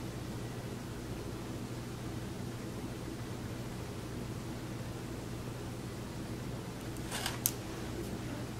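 Quiet, steady room tone: a low electrical hum with an even hiss underneath. A short soft rustle comes about seven seconds in.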